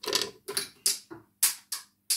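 A small container cap dropped and clattering away across the floor: a string of about seven sharp clicks, irregularly spaced.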